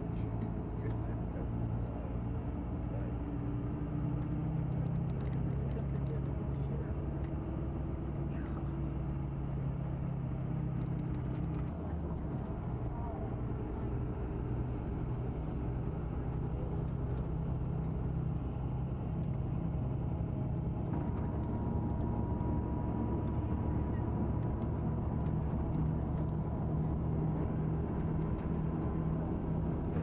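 Tour coach engine running steadily, heard from inside the cabin, with a faint steady higher whine joining about two-thirds of the way through.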